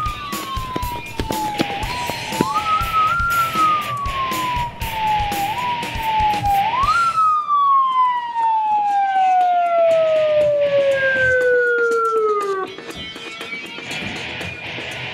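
Police siren wailing, rising quickly and falling slowly several times, then winding down in one long falling tone for about five seconds before cutting off near the end. Background music with a beat plays under it.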